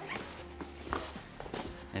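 Background music over a few light knocks and rustles of a fabric briefcase being handled as its two halves are unzipped and pulled apart.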